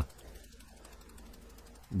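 Faint rustling of a fine mesh sieve being shaken as flour sifts through it.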